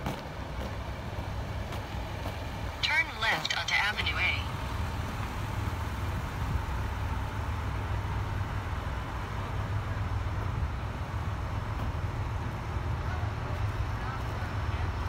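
Fire trucks' engines running at a standstill, a steady low rumble. A brief high-pitched sound about a second and a half long breaks in some three seconds in and is the loudest thing heard.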